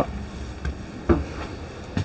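A few soft footsteps on a motorhome's floor over a low, steady background hum.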